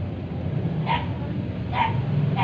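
A dog barks twice, short sharp barks about a second in and again near the end, over a steady low hum.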